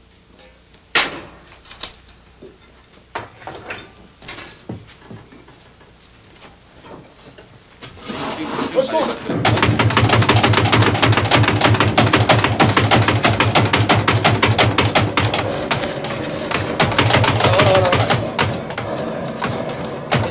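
Charcoal fire in a Raku kiln: a few scattered knocks at first, then from about eight seconds in a loud, dense crackling and rushing as the fire is fanned and sparks fly up, over a low steady hum.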